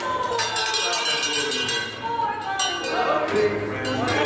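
Repeated sharp metallic clinking strikes with a bell-like ring, mixed with children's voices.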